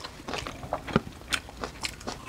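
Close-up chewing and biting as people eat rice and raw vegetables such as okra by hand: a run of irregular, crisp little clicks and wet mouth sounds.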